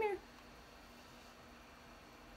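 A woman's voice says one short word at the very start, with a falling pitch. After that there is only faint room tone with a low steady hum.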